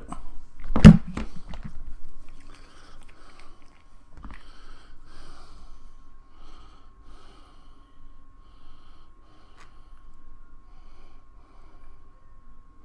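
Close handling noise from a vape mod and a plastic e-liquid bottle: one thump about a second in, then faint small clicks and rustles, with a faint steady high tone underneath.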